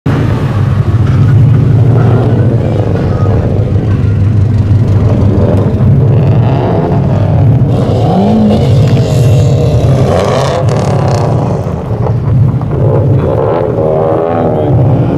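Engine and exhaust note of Subaru cars with turbocharged flat-four engines, an Impreza WRX wagon and a Legacy GT among them, driving slowly past one after another. The sound is a steady, loud low rumble.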